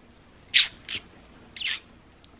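Three quick kisses, short wet lip smacks on a baby's head and cheek.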